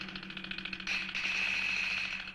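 Crickets trilling: a rapid, evenly pulsed, high-pitched chirr that holds steady, over a faint low hum.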